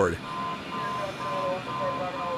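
A steady high electronic tone that breaks briefly once or twice, over a low background hum, with faint indistinct sounds lower down.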